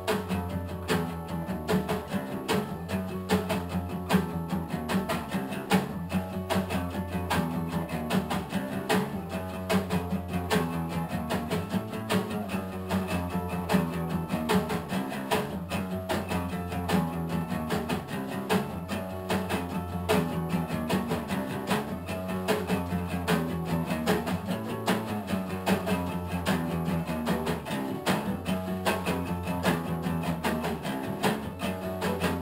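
Acoustic guitar strummed in a steady rhythm over a low line on an acoustic bass guitar, an instrumental passage with no singing.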